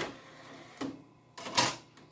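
Handling noise at a PowerMac 8100's CD-ROM drive as a disc is loaded: a click, a short knock, then a louder brief clatter about a second and a half in.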